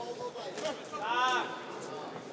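Arena background with one voice shouting out briefly about a second in, its pitch rising and then falling, typical of a shout from ringside or the crowd during a boxing round.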